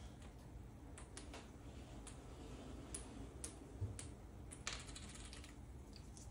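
Faint, irregular clicks of cardboard board-game order tokens being picked up and sorted by hand, with a denser flurry of clicks a little before the end.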